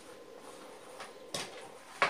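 Quiet handling noise of a fabric running waist bag being picked up and held up, with two short rustles about a second and a second and a half in.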